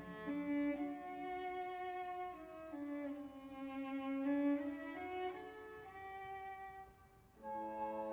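Orchestral music led by bowed strings, cellos and violins playing sustained, legato melodic lines. The music drops away briefly near the end before the strings come back in.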